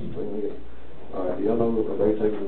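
Indistinct, muffled speech in a low-fidelity recording, quieter for the first second and then a voice picking up, over a steady low hum.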